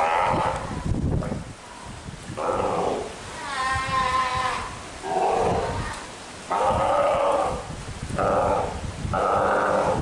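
Steller sea lion mother and her newborn pup calling back and forth: a series of about seven drawn-out calls, each up to about a second long, with short gaps between them.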